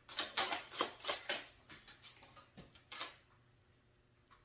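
Tarot cards handled and shuffled in the hands: a run of quick, irregular card flicks and rustles that stops about three seconds in.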